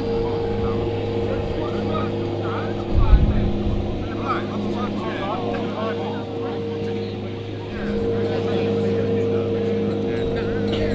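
A steady motor-like drone holding a few fixed hum tones, with faint voices over it and a short low thump about three seconds in.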